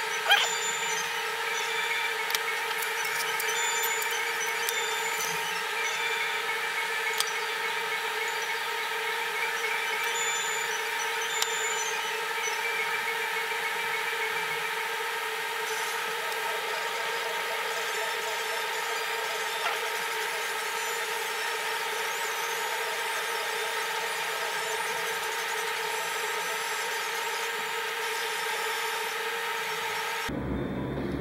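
A steady background hum of several fixed pitches, with a few light clicks and taps of metal tweezers and a hobby knife on small model parts; the sharpest click comes just after the start.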